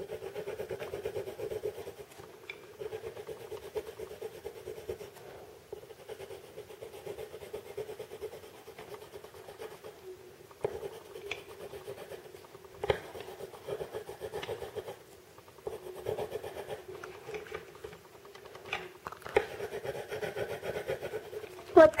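Coloured pencil shading on paper: rapid back-and-forth scratching strokes as an area is filled in pink, broken by several short pauses.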